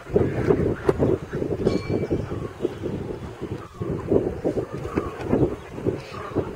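Wind buffeting the microphone: a rough, low rumble that rises and falls in irregular gusts. A brief faint high tone sounds about two seconds in.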